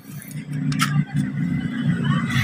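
A low, steady engine hum.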